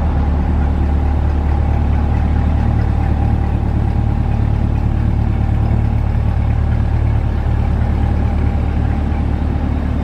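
A car engine idling steadily: a constant low drone with a faint steady higher tone above it.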